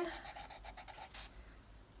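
Felt-tip marker scribbling on a cardboard toilet paper roll, in quick short strokes as it colours in a small shape. The strokes grow quieter after about a second.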